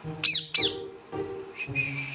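A caged parakeet gives two short, harsh squawks in quick succession, each sweeping down in pitch, in the first second, over background music.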